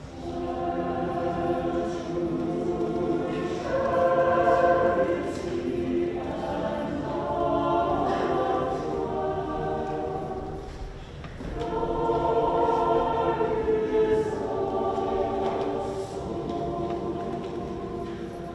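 Church choir singing in long held phrases, with a short break about eleven seconds in and softer singing near the end.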